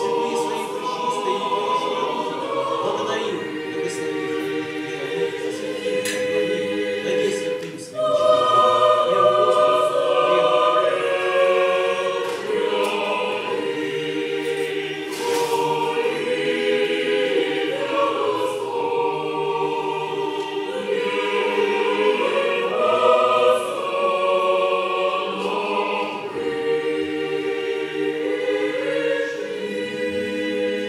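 Orthodox church choir singing a liturgical hymn unaccompanied, in sustained chords of several voices. About eight seconds in there is a brief break, and the choir comes back in louder.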